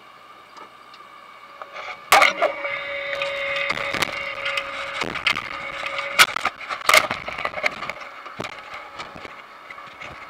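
Potato harvester machinery running with a steady whine. From about two seconds in come sharp knocks and clattering, with a held tone for a few seconds, as the body-worn camera is knocked and rubbed against clothing.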